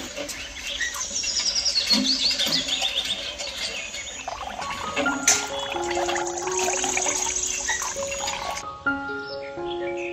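Background music with birds chirping, and a thin stream of water from a miniature hand pump pouring into a small steel pot.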